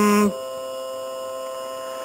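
A chanted syllable held on one steady note cuts off a moment in. A steady hum of several fixed tones carries on underneath through the pause.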